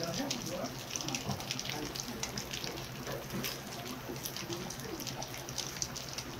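Stir-fried pork cartilage and rice sizzling in a foil-lined pan on a tabletop burner: a steady hiss full of small crackles. Light clicks of chopsticks work through the food.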